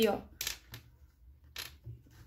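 A few short, faint clicks as small rigid name tags are handled between the fingers.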